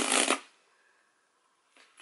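Cardboard book mailer rustling and scraping as it is pulled at by hand, for about the first half second, then near silence.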